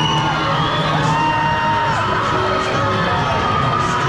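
Crowd of swim teammates cheering and yelling for swimmers mid-race, many voices overlapping, with some shouts held for about a second.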